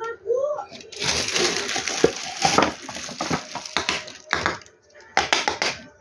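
Rustling, crinkling and knocking of plastic as a plastic water dipper is set down into a plastic-covered pan and another plastic item is picked up, densest from about one to four seconds in. Voices are heard in the background.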